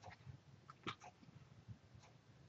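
Near silence: faint room tone with a few faint clicks, the clearest just under a second in.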